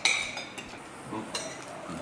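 Metal spoons and forks clinking against ceramic plates and bowls as people eat: one sharp clink with a short ring at the start, then a few lighter clinks.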